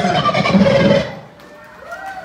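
Live funk band with electric guitars, keyboards, sax and drums holding a final chord that cuts off sharply about a second in, leaving only faint room noise.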